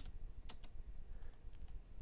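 Computer keyboard key presses: one sharp click at the start, then a few faint, scattered taps.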